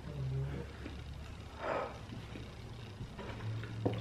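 Quiet sounds of people eating cheesecake: soft chewing with a short low closed-mouth "mm" hum near the start and another near the end, and a brief breath about halfway through.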